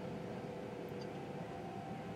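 Quiet room tone in a pause between speech: a low, even hiss with a faint steady hum.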